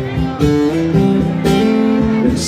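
Live amplified acoustic guitar strummed in a steady country rhythm, about two strums a second, with a man's voice singing over it through the stage PA.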